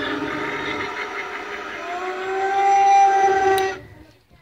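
A Halloween animatronic prop, the 'Lady of the Grave', playing its eerie sound track through its built-in speaker: long held, wavering tones that slide upward about halfway through, then cut off suddenly near the end.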